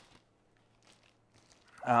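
Mostly quiet, with a few faint scuffs and rustles of a cardboard box being handled in the middle. A voice starts just before the end.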